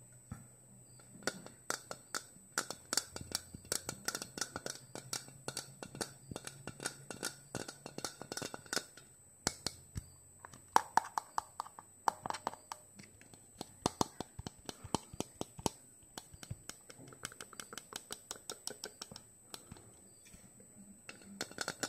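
Fingernails tapping quickly and irregularly on a plastic bottle held close to the microphone, starting about a second in, with a short pause about halfway through. A few taps near the middle ring with a brief hollow tone.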